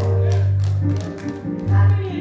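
Live church music: deep held bass notes with a voice line above them and light, evenly spaced taps.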